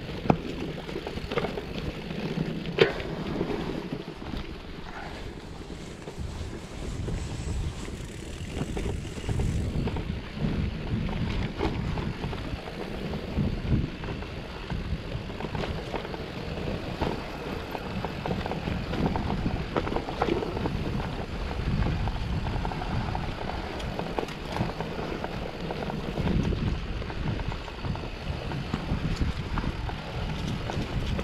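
Trek mountain bike rolling down a dirt singletrack: knobby tyres rumbling over dirt and stones, with the bike rattling and knocking over bumps, two sharp loud knocks in the first three seconds. Wind buffets the microphone throughout.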